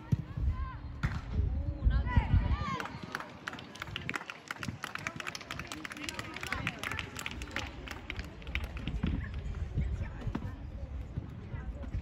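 Voices calling out across a youth football pitch during play, over a loud low rumble in the first couple of seconds. From about three seconds in there is a dense run of quick clicks that lasts until near the end.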